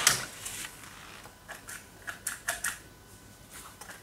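WE Tech Beretta M92 gel blaster magazine being handled and loaded by hand: one sharp click at the start, then a scatter of small, light clicks as gel balls are pressed in.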